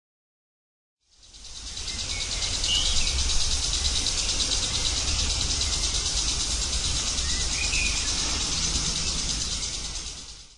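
A steady, high-pitched chorus of insects with two brief bird chirps, fading in about a second in and fading out at the end.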